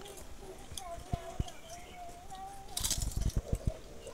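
A voice holds one wavering note for about two seconds, then a short burst of crackling crunches about three seconds in, as crisp homemade potato chips are bitten and chewed.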